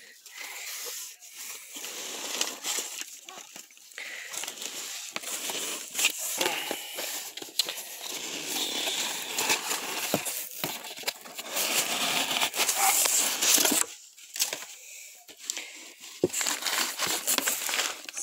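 Hands handling packaging: crinkling and rustling of plastic wrap and cardboard as shrink-wrapped disc box sets are pulled from a shipping box. It goes on throughout with many small crackles, grows louder in the middle and eases off for a moment near the end.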